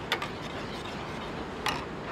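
A metal spoon clinks twice against a copper saucepan while stirring a sauce, once just after the start and again near the end, over a steady background hiss.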